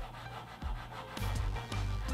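Chalk pastel rubbed back and forth across paper, a scratchy scraping with each stroke, over soft background music.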